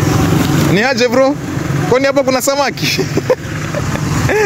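A motorcycle's engine passing on the road, its low hum fading out within the first second, then people's voices talking in short bursts.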